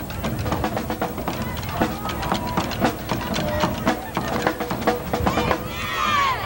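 A school band's drums playing a rapid beat, several strikes a second, over faint held notes.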